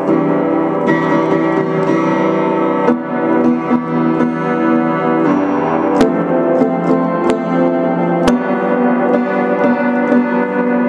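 Vintage 1937 upright piano played in dense, sustained chords mixing white and black keys around C. A few sharp clicks cut through about six, seven and eight seconds in.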